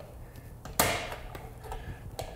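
Light rustle of power cords being handled, with one sharp click a little under a second in as a plug is pushed into the ceiling outlet.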